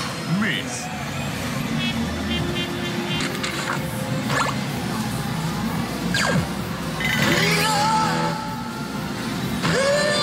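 Yes! Takasu Clinic pachinko machine in play: its music, recorded voice clips and electronic sound effects running together during a reach presentation.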